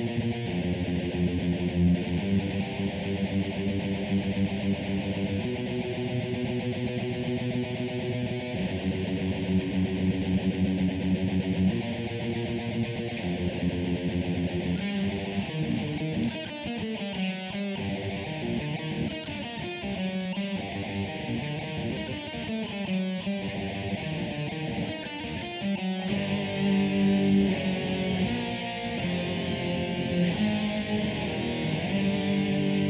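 B.C. Rich electric guitar played through a Line 6 combo amp: held chords at first, then a choppier passage of quicker picked notes from about halfway, with long sustained chords coming back a few seconds before the end.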